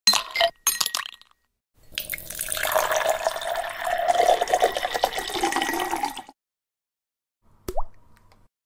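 Ice cubes clinking as they are dropped into glass tumblers, then milk poured over the ice, splashing and filling the glass for about four seconds. Just before the end comes a brief rising tone.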